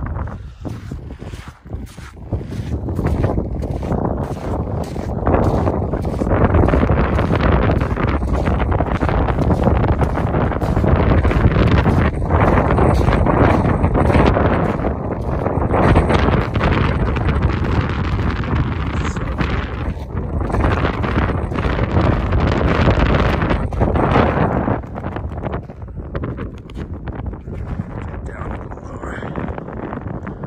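Strong wind buffeting the microphone, a loud rumbling gust that rises a few seconds in and eases off near the end.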